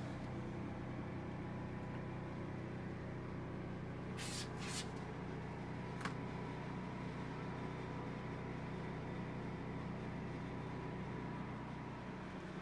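A steady low machine hum with a few even pitched tones, running unchanged throughout. Two short hisses come about four seconds in and a sharp click about six seconds in.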